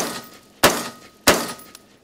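Three rifle shots from an AR-15 carbine in 5.56mm, about two-thirds of a second apart, each with a short echoing tail.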